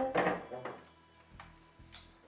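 A wooden chair scraping and knocking as a man sits down at a table, with faint background music underneath.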